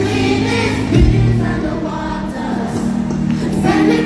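A choir singing over music with held chords, with a deep bass hit about a second in.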